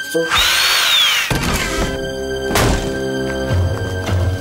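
A cartoon sound effect: a loud hissing whoosh with a whine that rises and then falls, lasting about a second. Music with held notes then comes in, with a single thud partway through.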